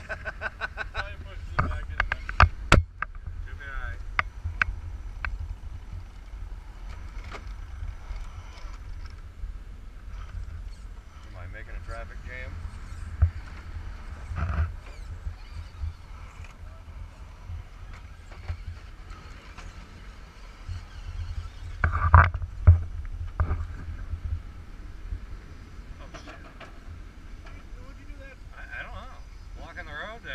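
Radio-controlled rock crawlers working over granite rock: sharp knocks and clunks of hard tires and plastic-and-metal chassis striking stone, loudest a couple of seconds in and again past twenty seconds, over a steady low wind rumble on the microphone.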